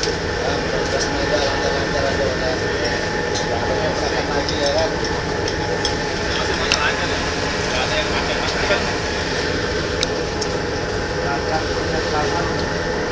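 Ship's machinery running steadily, a constant drone, with indistinct voices over it and a few faint clicks.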